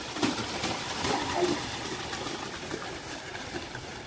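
Water splashing and churning as a pair of racing buffaloes gallop through the flooded, muddy Kambala track, with a few faint distant shouts in the first second and a half.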